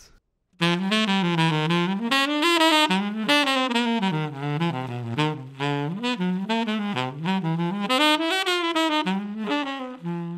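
Solo tenor saxophone playing a quick jazz line that winds up and down in pitch. The notes are tongued with a mix of doo-den-doo articulation on rising shapes and doo-dah articulation on falling ones. It starts about half a second in and has only brief breaks.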